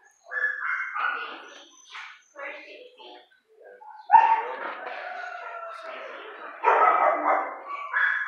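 Dogs barking in shelter kennels in separate bursts, with the loudest bark coming suddenly about four seconds in.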